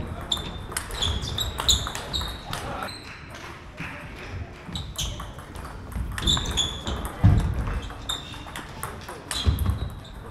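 Table tennis rally: the plastic ball clicking off the rubber bats and the table in quick alternation, each hit ringing briefly, with a pause of a couple of seconds midway. Two heavier low thuds come in the later half.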